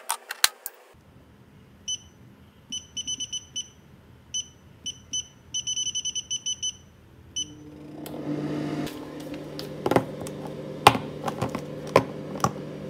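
Gaabor air fryer's touch control panel beeping as its buttons are pressed: a string of short, high beeps, including a quick run of about eight near the middle. About eight seconds in, the air fryer starts running with a steady hum, and a few sharp clicks of plastic being handled come near the end.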